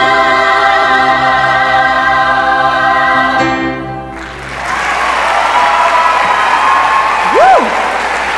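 A choir of teenage voices holding a sustained chord with vibrato, cut off about four seconds in. Audience applause follows, with a whoop near the end.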